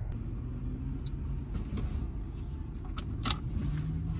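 Car running, heard from inside the cabin as a steady low rumble, with a few light clicks and a sharper click about three seconds in.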